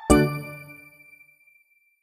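A bright, bell-like ding sound effect struck once just after the start, ringing with several tones and fading away within about a second and a half.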